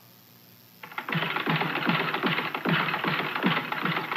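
A moment of quiet, then about a second in a fast, even mechanical clatter starts, a few regular strokes a second, with music under it.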